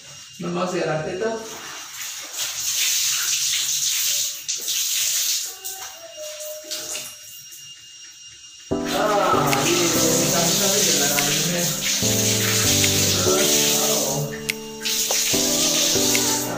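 Clothes being washed by hand under a tap in a small tiled room: running and splashing water with wet fabric being handled. A little over halfway through, music starts suddenly and takes over.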